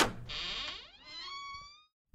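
A short sound effect: a hiss lasting about half a second, then a squeaky pitched tone that rises slightly and fades out.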